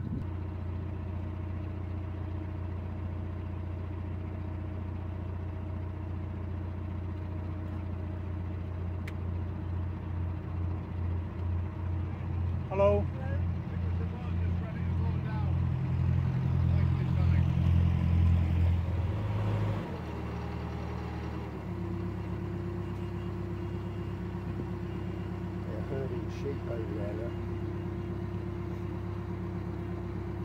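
A narrowboat's diesel engine running steadily at cruising speed. In the middle the engine note pulses in a regular throb and grows louder, then shifts to a different steady pitch about twenty seconds in.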